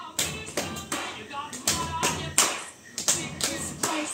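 Hand claps, sharp and uneven, about four a second, with faint music and voices from a television underneath.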